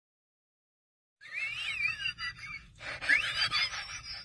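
Silence for about the first second, then birds chirping in short whistled phrases that glide up and down in pitch, over a faint low rumble of background noise.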